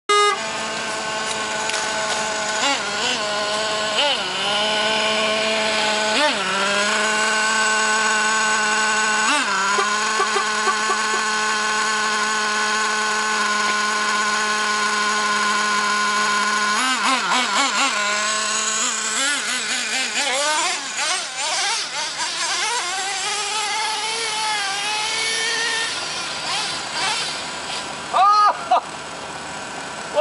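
Small nitro glow engine of a Traxxas T-Maxx RC monster truck running with a high, steady buzzing note. About halfway through, its pitch starts swinging up and down repeatedly as the throttle is worked.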